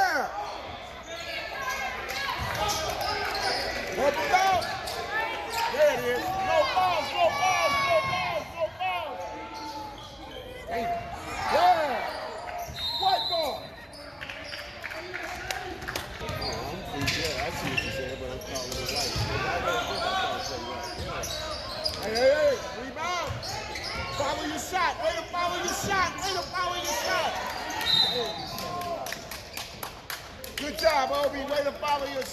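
A basketball bouncing on a hardwood gym floor during live play, amid many short high sneaker squeaks and indistinct shouting voices.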